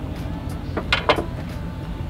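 A vehicle engine idling with a steady low rumble. Two short sharp clicks come about a second in.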